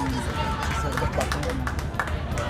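Steady low road rumble inside a car cabin, under brief, indistinct voice sounds and scattered light clicks.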